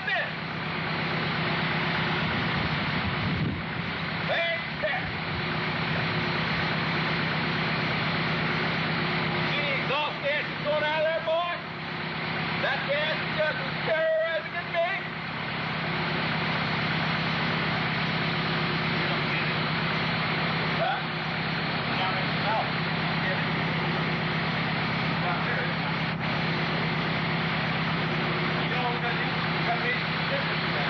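A dune buggy's engine running steadily at idle, a constant even hum, with indistinct voices talking over it at times.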